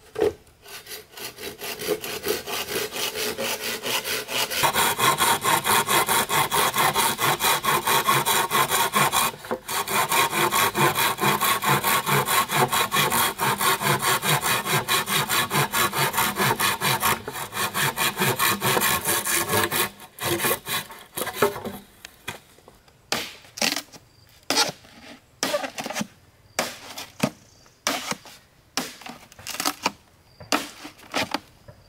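Hand saw cutting through a green bamboo pole in fast, even strokes, with a short pause about nine seconds in. The sawing stops about twenty seconds in, followed by a run of sharp, separate knocks about a second apart.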